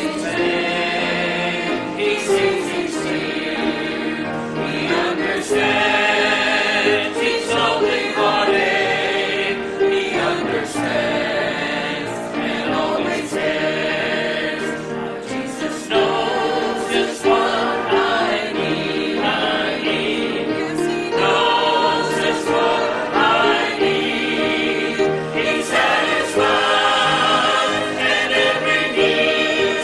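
Church choir of men's and women's voices singing a gospel hymn together.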